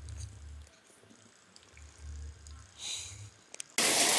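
A dog sniffing and licking at a hand, faint, with a few low bumps of handling on the microphone. Near the end, heavy pouring rain starts abruptly and becomes the loudest sound.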